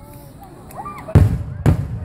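Two loud booms of aerial firework shells bursting in the sky, about half a second apart, a little past one second in.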